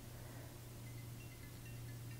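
Quiet room tone: a steady low hum with a few faint, brief high-pitched tones.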